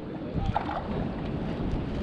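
Wind buffeting the action-camera microphone, a steady low rumble, with the rippled water lapping around the kayak.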